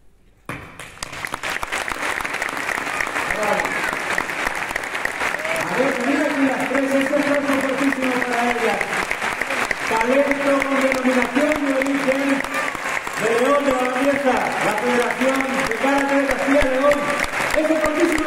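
Theatre audience applauding, the clapping starting suddenly about half a second in and holding steady throughout. From about three seconds in, long held pitched tones sound over the clapping.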